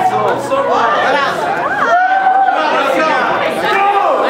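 Several people talking at once in an auditorium: overlapping chatter, with no music playing.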